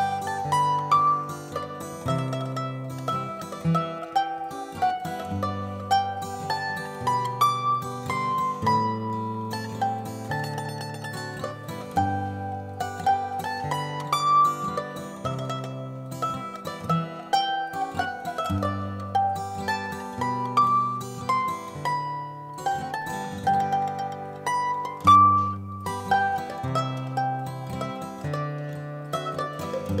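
Mandolin playing a plucked melody over acoustic guitar accompaniment, the guitar's low bass notes changing every second or two under the mandolin's quicker notes.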